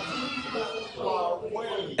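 Voices speaking more quietly than the main speaker, as if farther from the microphone, in short stretches with brief gaps.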